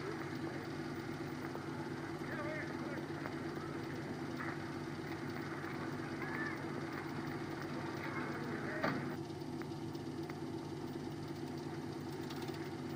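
A steady low hum over an even hiss, with faint voices now and then in the background.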